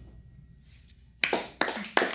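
A group of people begins clapping about a second in: a sudden burst of dense, sharp hand claps in a small room, following a short quiet stretch.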